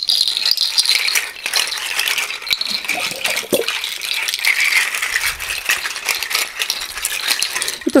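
African plant-made rattles, bunches of dried seed pods strung on cords, swished and shaken by hand: a continuous dry rustling clatter of many small clicks that swells and eases as the bunches sway.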